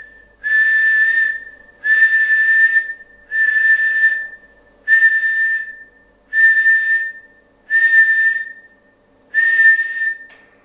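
A man whistling one steady high note, held about a second at a time and repeated seven times at roughly one-and-a-half-second intervals. The whistle is a test tone that keys the transceiver and drives the 811A valve linear amplifier toward peak output for a power reading.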